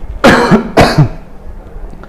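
A man clearing his throat: two short, rough, loud bursts about half a second apart.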